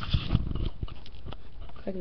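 Handling noise: a plastic-backed sheet of stickers rustling and bumping close to the microphone in a run of irregular small knocks and crackles, with a low rumble underneath.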